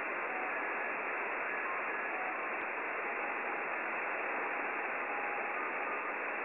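Audio stream from a 10 GHz WebSDR receiver (satellite LNB and software-defined radio): steady receiver hiss cut off above a narrow passband. A few faint, brief tones at changing pitches sound now and then within the noise.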